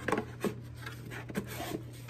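Handling noise of a monogram canvas pocket agenda being moved about on a cardboard gift box: light rubbing with a few soft taps, over a steady low hum.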